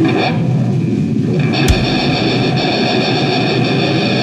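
A heavy metal band playing live, with distorted electric guitars sustaining ringing chords. The top of the sound thins out briefly near the start, and a single sharp thump comes just before the middle.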